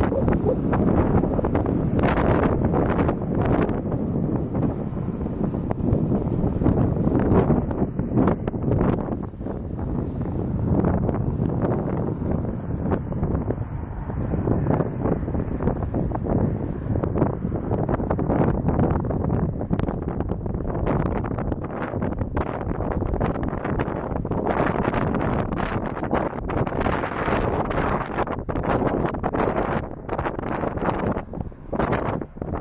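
Wind buffeting the camera's microphone: a loud, uneven rush that rises and falls in gusts, with many sharp buffets.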